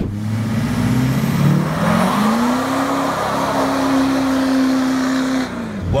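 Lifted, emissions-deleted 2016 GMC Denali 2500 with a Duramax V8 turbo-diesel, accelerating hard. The engine note climbs over the first couple of seconds, holds high, then falls away near the end.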